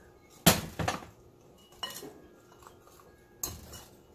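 Metal spoon clinking against a glass mixing bowl while stirring flour: several sharp clinks with a short ring, the loudest about half a second in.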